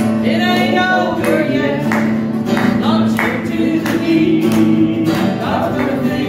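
A gospel song sung over a strummed acoustic guitar: held, wavering vocal notes over guitar strums about every 0.7 s.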